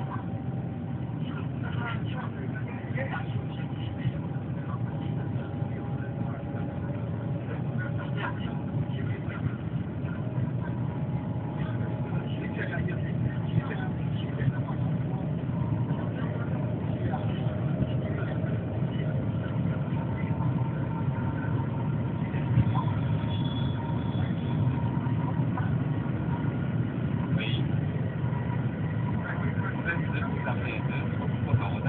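Cabin noise aboard the Shanghai Maglev train in motion: a steady low rumble that grows slightly louder over the half-minute, with faint whining tones that drift slowly in pitch. Passengers' voices murmur faintly underneath.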